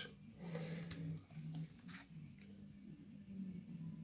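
Low room hum with faint soft rustling and handling noises.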